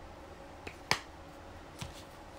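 Three sharp clicks, the loudest about a second in, from handling a plastic bottle of Meguiar's ScratchX compound while dabbing it onto a model car.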